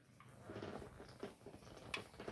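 Faint sipping and swallowing of an energy drink from an aluminium can, with small, irregular clicks.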